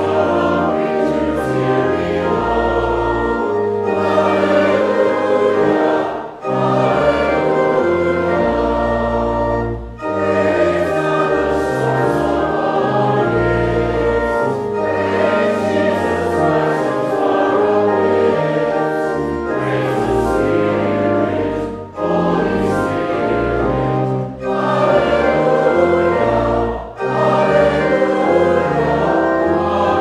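Church choir singing a hymn in phrases separated by short breaths, over low sustained accompaniment.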